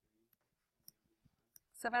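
A few faint, sparse clicks, then a woman starts speaking near the end.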